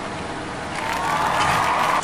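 Handling noise of an aluminium drink can in a plastic skeleton-hand holder: a scraping rustle that swells in the second half.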